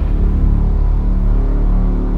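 Intro music holding a sustained low drone with steady held notes, its high end dying away.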